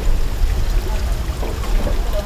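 Steady running and trickling of water in an aerated live-seafood tank, over a deep, continuous low rumble.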